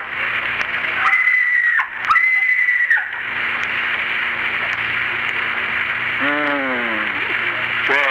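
Radio-drama murder scene: two short high-pitched screams, each rising sharply into a held note, then about three seconds later a single moan that falls in pitch. All of it sits over the steady hiss of a 1934 radio recording.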